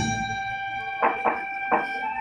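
Ritual folk-festival music: a flute holds one steady high note while three sharp percussion strikes come quickly in the second half.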